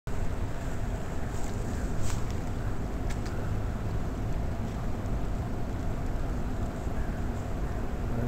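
Steady low wind noise on the microphone over the rush of a fast river current, with a few sharp clicks in the first three or four seconds.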